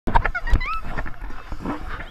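Children squealing and laughing while pool water splashes. A couple of sharp splashes come in the first half second, with short rising squeals just after.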